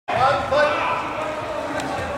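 Voices calling out in an echoing sports hall, with a thump near the end.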